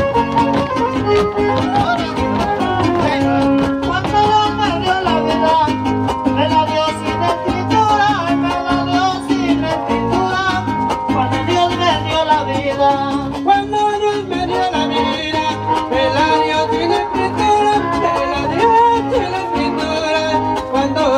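Son huasteco (huapango) music from a huasteco trio: a fiddle carrying the melody over strummed jarana and huapanguera guitars, playing continuously at a steady level.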